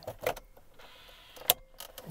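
Light plastic clicks and knocks as a vehicle instrument cluster is handled and slid into its opening in the dashboard, with one sharp click about one and a half seconds in.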